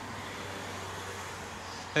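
Steady outdoor street background: a constant, even hiss of distant road traffic with no distinct events.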